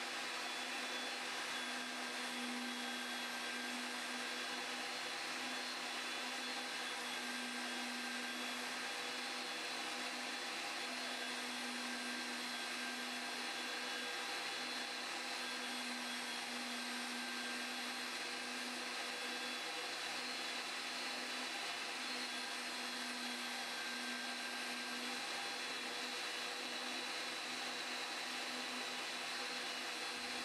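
Ridgid 300 power drive running steadily, turning 2-inch steel pipe while the pipe cutter's wheel is fed in by hand: a constant motor hum with one steady tone.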